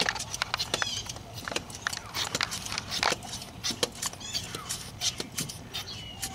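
Hand pump of a radiator pressure tester being worked, a run of irregular clicks, pressurizing the cooling system to find a coolant leak.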